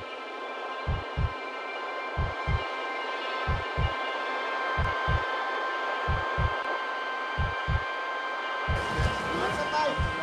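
Heartbeat-like double thump, lub-dub, repeating about every 1.3 s under a sustained high drone: a tension-building sound effect. Near the end the sound opens up to full range.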